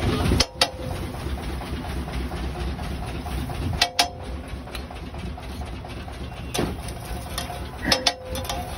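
A metal spatula striking and scraping a large iron tawa (flat griddle), a few sharp clanks scattered through: two close together near the start, two about halfway, and more near the end. Under them runs a steady low rumble.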